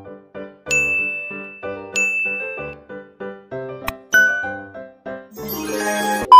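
A light keyboard music tune with two bright chime dings, about a second and two seconds in, from a subscribe-button animation's bell sound effect. Near the end a burst of TV static hiss comes in.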